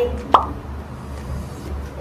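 A single short pop with a quick upward sweep in pitch about a third of a second in, over a steady low hum.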